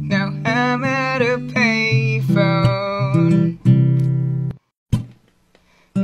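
Song playing: acoustic guitar with a voice singing wordless, bending runs. The music breaks off about four and a half seconds in, leaving a short gap with a single click before it starts again at the end.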